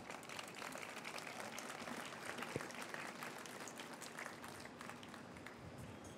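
Audience applauding, faint and steady, as a speaker is welcomed to the podium.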